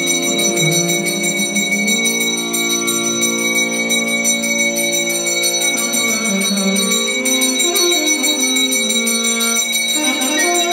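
A temple hand bell rung continuously during puja, quick even strokes with a steady ring, over a melody held in long stepped notes.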